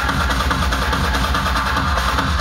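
Loud electronic dance music from a DJ set playing over a club sound system, with heavy bass and a steady kick-drum beat.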